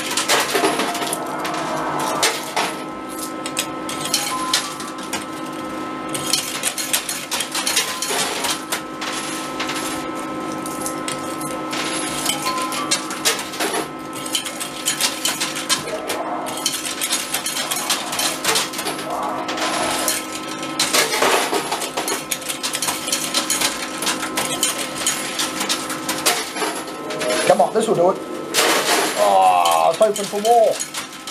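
Coins being played into an arcade coin pusher, clinking again and again as they drop onto the coin bed and against the piled coins, over the machine's steady electronic hum.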